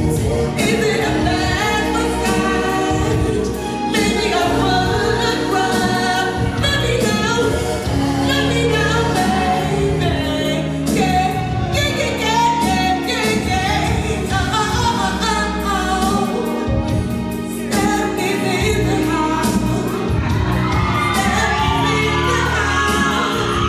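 A woman singing lead over a live band, holding and bending long sung notes and runs.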